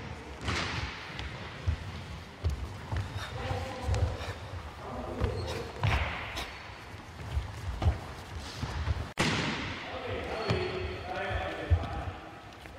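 Stocking feet stepping and stamping on a wooden sports-hall floor during kung fu sparring footwork: irregular dull thuds that echo in the large hall.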